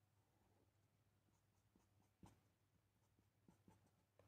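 Near silence, with a few very faint short strokes of a pen hatching on paper through the second half.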